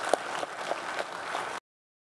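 Congregation applauding, many hands clapping together; it cuts off suddenly about a second and a half in.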